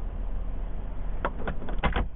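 Low steady rumble of a pickup truck's engine idling, with a few light clicks in the second second.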